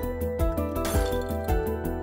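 Background music with a steady beat of about two pulses a second and held melodic notes, with a short bright clink about a second in.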